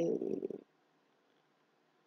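A woman's voice trailing off as a word fades out in the first half second, then near silence.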